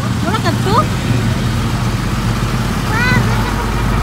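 Hyundai fire truck's engine running with a steady low rumble, with short voices calling out about half a second in and again near the end.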